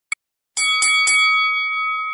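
A bell struck three times in quick succession, about a quarter second apart, its ringing holding on and slowly fading after the last strike. A short click comes just before the first strike.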